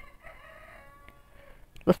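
A faint, distant animal call: one drawn-out call of about a second and a half, with a small click near the middle.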